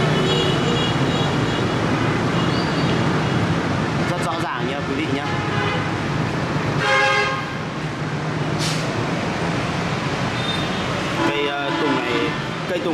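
Steady road-traffic noise with a low hum, and a vehicle horn tooting briefly about seven seconds in.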